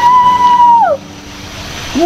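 A woman's high voice, probably a scream on the swing, glides up to one held note, holds it for under a second, and falls away. After it comes a quieter steady rushing noise.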